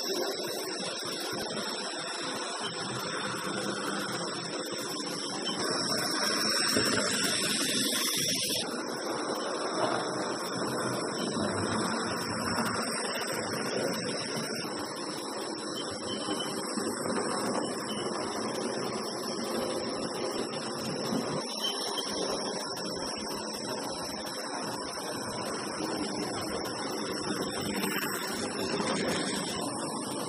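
OO gauge Hornby model trains running on the layout track: a steady whir of small electric motors with the rumble of wheels on the rails.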